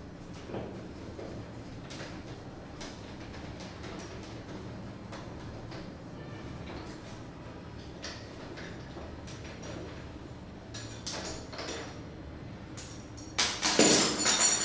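Screwdriver backing out the screws of a round doorknob lock's metal mounting plate: faint scrapes and small clicks of metal on metal. Near the end come louder metallic clicks and a clatter as the loosened plate comes off the spindle.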